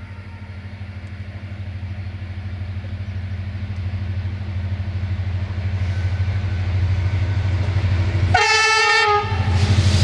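CFR Class 65 ('Jimmy') diesel-electric locomotive approaching, its engine drone growing steadily louder. A horn blast of about a second sounds near the end.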